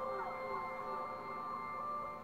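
Quiet electronic music loop of steady, pure synth tones with short falling chirps that repeat throughout, the sound of the LEGO RFID band's computer-played backing.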